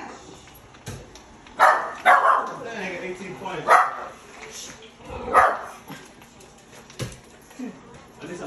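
A dog barking: four loud barks spread over several seconds.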